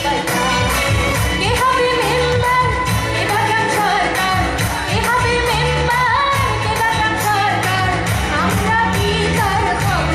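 A woman singing a pop song into a microphone with a live band of electric guitars, keyboards and bass, over a steady beat.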